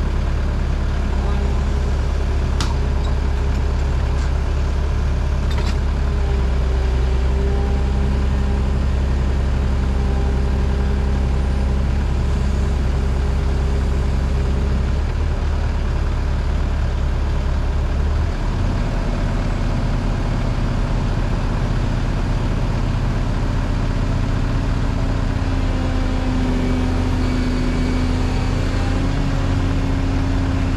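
Diesel excavator engine running steadily while the boom is worked on hydraulics. Its note steps up about two-thirds of the way through. A couple of sharp clicks come a few seconds in.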